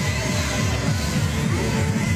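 Background music, playing continuously.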